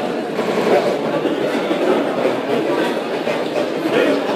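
Steady babble of many students talking among themselves at once in a lecture hall, no single voice standing out.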